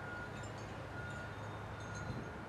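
Faint wind chime tones ringing now and then over a quiet, steady outdoor background hum.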